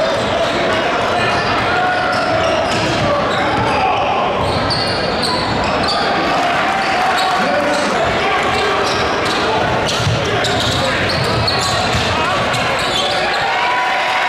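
Live basketball game sound in a gymnasium: a steady din of crowd voices talking and shouting, with a basketball dribbling on the hardwood floor.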